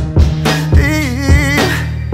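R&B song with a male lead vocal singing a drawn-out, wavering line over a drum beat and steady bass.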